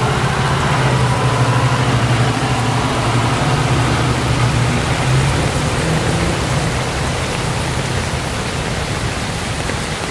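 Rain falling steadily on a wet street and puddle, with a school bus's engine running low as it pulls away; the engine rumble fades after about six or seven seconds, leaving the rain.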